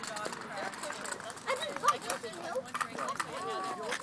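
A kick scooter's small wheels rolling and clacking over a brick-paver driveway, with a few sharp clacks about two seconds in, among children's and adults' voices.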